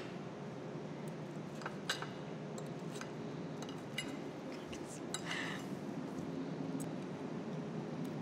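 Metal knife and fork clinking lightly on a plate, a few scattered taps at irregular intervals over steady room tone.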